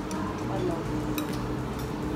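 A few light clicks of cutlery against plates and bowls during a meal, over a steady low hum and faint background voices.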